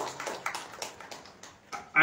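Applause from a hall audience, the clapping thinning out and dying away over the first second and a half.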